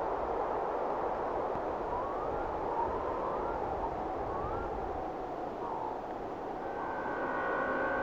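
A steady rushing noise with a few faint, short rising chirps in the middle. Sustained musical tones fade in near the end.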